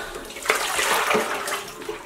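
Water sloshing and gushing out of a plastic basin as it is tipped and emptied into a sink, the flow uneven and tailing off near the end.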